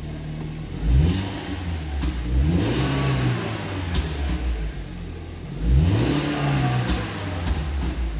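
A BMW 118i's four-cylinder petrol engine, heard from inside the cabin, idles and is then revved three times. Each time the pitch climbs, holds briefly and falls back toward idle, the blips reaching about 3,000 rpm.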